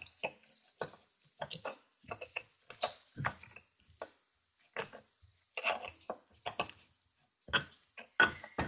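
Stone pestle (ulekan) grinding and pounding chili sambal in a stone mortar (cobek): irregular short knocks and scrapes of stone on stone through wet chili paste, about two a second.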